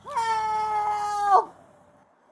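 A woman's drawn-out, wordless wailing scream, held at one high pitch for just over a second, with a quick rise at the start and a drop as it breaks off. It is a cry of distress from a person being held down.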